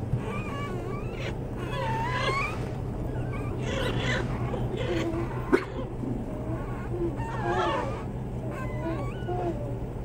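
A litter of young puppies whining and squeaking: many short, high, thin cries that slide up and down in pitch, often overlapping, over a steady low hum. A single sharp click comes about five and a half seconds in.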